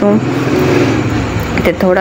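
A loud, even rushing noise like a passing motor vehicle, swelling and fading over about a second and a half between bits of speech.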